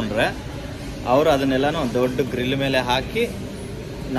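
A man talking, over a steady low background hum.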